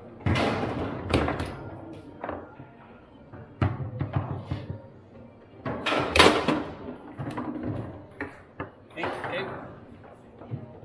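Foosball being played: the hard ball is struck by the rod-mounted players and knocks against the table walls, a string of sharp irregular knocks and bangs, the loudest about six seconds in. Voices chatter in the background.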